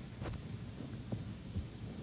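Low steady hum of a quiet church. Over it come a few soft knocks and a light clink, once a quarter second in and again about a second later, as altar vessels are handled.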